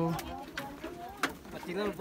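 People's voices talking off-mic. One voice draws out a long vowel at the very start, and there are a few sharp knocks.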